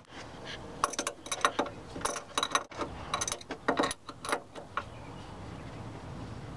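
Adjustable crescent wrench clinking on the steel fitting of a power steering pressure hose at the pump as the fitting is tightened: a series of light metallic clicks in small clusters.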